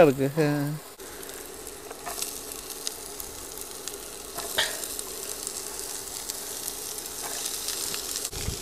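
Chopped onions, green beans and carrots sizzling as they fry in a pan, starting about a second in, with a few scrapes of a wooden spatula stirring them, over a steady low hum.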